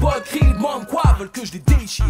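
French hip hop track: a beat with heavy kick drums under a rapped vocal line.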